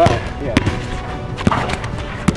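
A basketball being dribbled on a wet, soapy outdoor court surface, giving a few sharp, unevenly spaced bounces.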